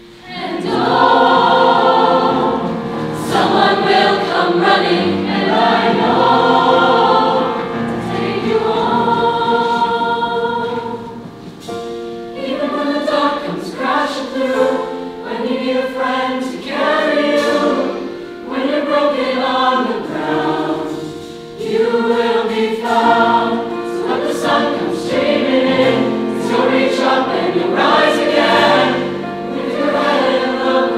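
Large mixed choir of men's and women's voices singing, coming in loudly right at the start and carrying on in full phrases with short breaks between them.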